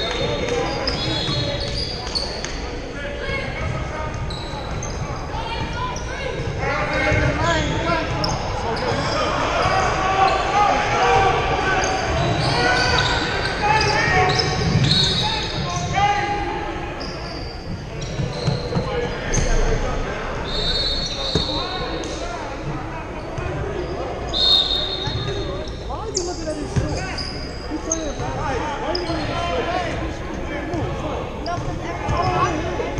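Basketball game sounds in a large echoing gym: a ball bouncing on the hardwood floor, sneakers squeaking in short high chirps many times, and players and spectators calling out.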